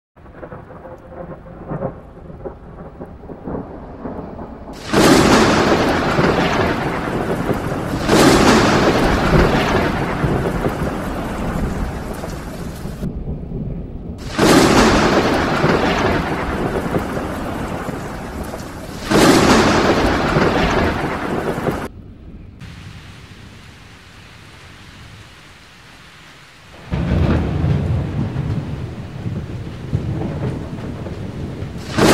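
Thunderstorm: rain falling steadily, broken by loud claps of thunder that each start suddenly and rumble away over a few seconds, four strong ones in the first two-thirds and a lower, weaker rumble near the end.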